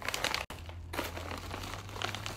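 Plastic snack bag crinkling as it is handled and tipped.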